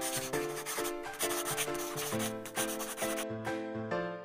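Marker scribbling sound effect over background music with steady melodic notes. The scratchy writing sound stops about three seconds in while the music carries on.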